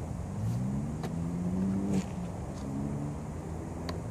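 Small electric quadcopter's motors and propellers spinning up: a low hum that rises in pitch, breaks off suddenly about two seconds in, then carries on steadier, over wind rumble on the microphone.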